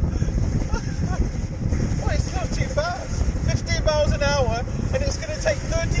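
Steady rushing, rumbling noise of a rider sliding fast down an enclosed metal tube slide. Short wordless exclamations from the rider come about two and four seconds in.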